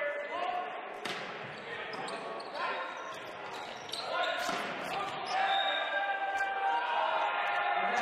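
Volleyball rally in a large echoing gym: a serve hit about a second in, then sharp ball strikes around four seconds in as the ball is played at the net. From a little after five seconds, players shout and cheer as the point is won.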